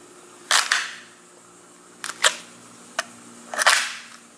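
ESEE-3 fixed-blade knife handled in its stiff plastic belt sheath, which holds the blade with a tight snap-in fit: a scrape about half a second in, a few sharp clicks, and another scrape near the end.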